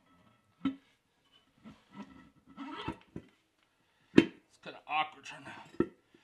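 Torque converter being worked by hand onto a 4L60E transmission's input shaft inside the bellhousing, metal clunking and scraping. There are three sharp knocks, the loudest about four seconds in.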